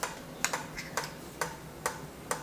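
Regular ticking, about two sharp ticks a second.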